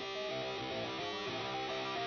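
Guitar playing a picked, repeating riff at the opening of a rock song, with no drums yet.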